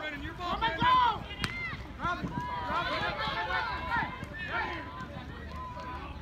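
Several people shouting during a rugby play, voices overlapping, with one sharp click about a second and a half in.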